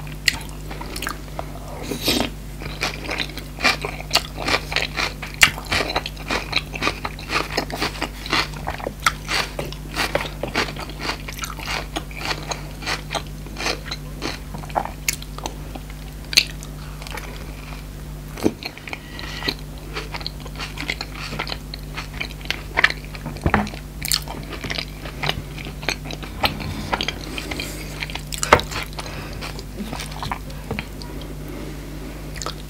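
Close-miked chewing and biting of a toasted tortilla chicken fajita wrap and crisp shredded lettuce salad: dense crunching with many sharp crackles, over a faint steady low hum.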